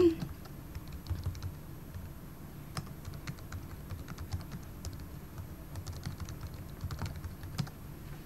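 Computer keyboard being typed on: a quiet, irregular run of quick key clicks as a login email and password are entered.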